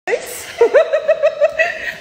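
A woman laughing: a quick run of short, high 'ha-ha-ha' pulses, about seven a second, starting about half a second in.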